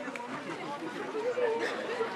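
Indistinct talking: several people's voices chattering at a moderate level, with no single clear speaker.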